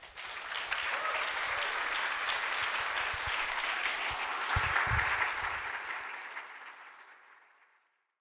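Audience applauding, starting right after the speaker's thanks and fading out over the last couple of seconds.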